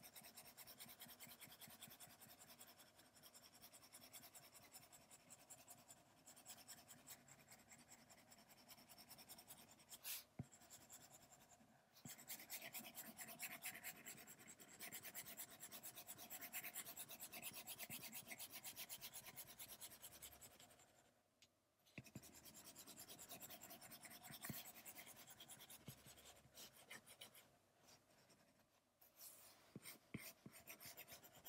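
Faint stylus strokes on a tablet's glass screen: rapid back-and-forth hatching that makes a continuous light scratching rub, with a couple of brief pauses.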